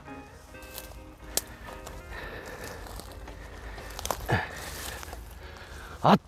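Background music, with footsteps and the swish of tall weeds as a person walks up through them.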